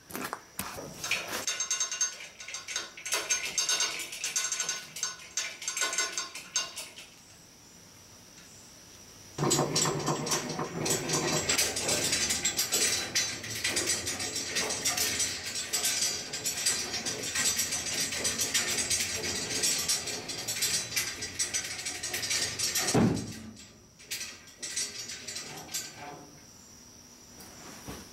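Hand chain hoists on a gantry crane being pulled, with chain links rattling and clicking through the hoists as a heavy cast-iron tailstock is lifted on slings. There are two stretches of pulling: a shorter one early and a longer, steadier one in the middle that ends with a brief rising squeak.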